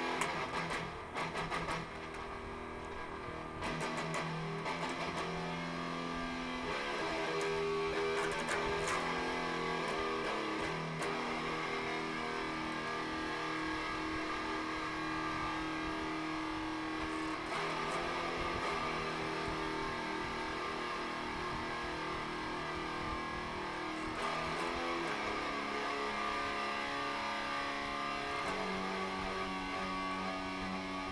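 Electric guitar played freestyle, long held notes and chords ringing out and changing every few seconds, with a few sharp clicks in the first seconds.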